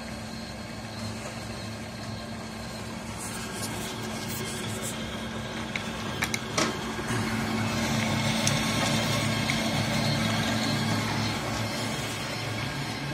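Machinery running with a steady hum, louder in the second half. A few sharp metallic clanks come about six seconds in, as a metal bucket of pellets is handled.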